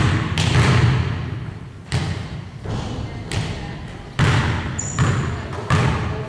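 A basketball thudding on a hardwood gym floor about five times at uneven intervals, each hit echoing on through the large hall.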